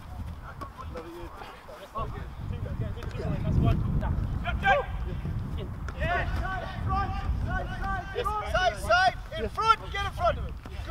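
Indistinct calls and shouts from footballers across the training pitch, sparse at first and busier from about halfway through, over a steady low rumble.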